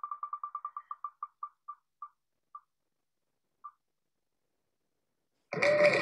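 Wheel of Names web spinner's tick sound effect as the on-screen wheel spins down: quick clicks that slow and space out, the last two about a second apart, until the wheel stops. A louder sound comes in near the end.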